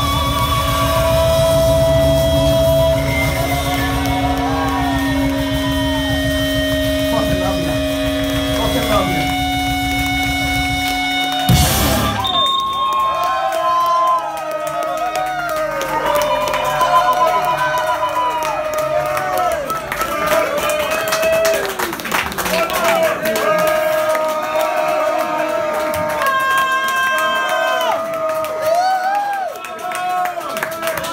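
Live rock band of electric guitar, bass and drums holding a sustained closing chord that ends on a loud final hit about twelve seconds in. After the hit the low end drops away and the audience whoops and cheers over some leftover guitar sound.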